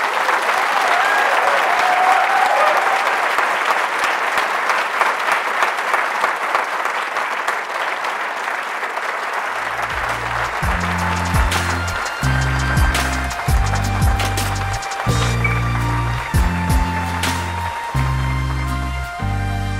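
An audience applauding, loud from the start and slowly thinning. About halfway through, an instrumental music track with a heavy, stepping bass line comes in and plays over the last of the applause.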